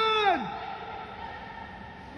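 A person's drawn-out high-pitched call, held steady and then sliding down in pitch, dying away about half a second in. After it comes only the steady hiss of an indoor pool hall.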